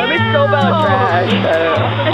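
A high-pitched voice wavering and sliding down in pitch over background music with a steady bass line.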